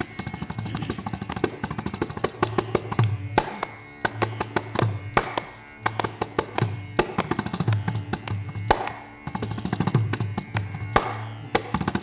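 Mridangam played fast and densely with no voice, crisp sharp strokes over deep booming bass strokes, as in a Carnatic percussion solo (tani avartanam).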